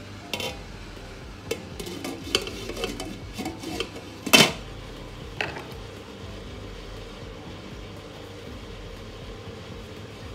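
Metal and glass clinks and knocks as cookware is handled on a stainless steel electric hotpot: a round grill plate is set into the pot and the glass lid is put on. The loudest clank comes about four seconds in, with one last light knock a second later.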